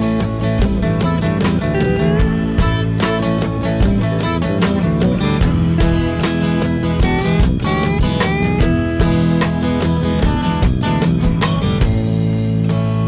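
Instrumental break of a rock song: guitars with short rising sliding notes over a steady drum beat, with no vocals.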